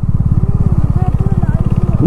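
Bajaj Dominar 400 single-cylinder engine running as the motorcycle gathers speed at low road speed, a fast, even beat of firing pulses.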